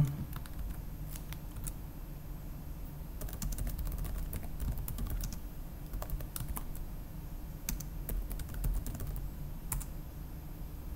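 Typing on a computer keyboard: irregular key clicks in short runs, busiest in the middle and near the end.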